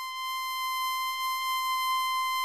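A steady, high electronic tone holding one pitch with a row of overtones, swelling slightly in loudness early on.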